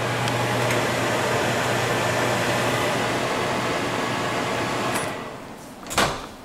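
GE microwave oven running on a short test with its new stirrer fan cover fitted: a steady hum and fan noise with no sparking. The sound dies away about five seconds in, and the door latch clicks sharply near the end.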